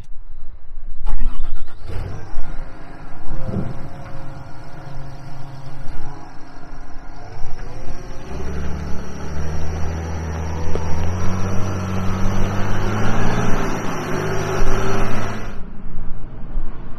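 John Deere 544K wheel loader's diesel engine running, picking up and revving higher with a rising pitch from about halfway through.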